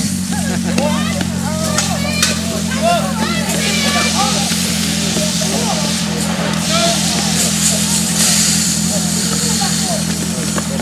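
Several people's voices talking and calling out over a steady, low engine hum.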